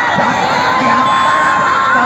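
A large crowd of many voices shouting and cheering at once, with a steady high tone running underneath.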